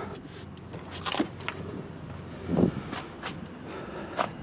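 Handling noises around a car: scattered light clicks and knocks, and a dull thump about two and a half seconds in.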